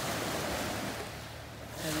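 Ocean surf washing onto the beach: a steady rush of small waves, a little louder in the first second and easing after.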